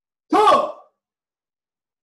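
A man's single short, loud shout, about half a second long, rising then falling in pitch.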